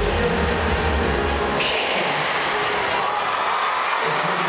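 Live pop-dance song through a concert PA, with the crowd cheering over it; the heavy bass beat drops out about a second and a half in, leaving the crowd noise and higher synth sounds.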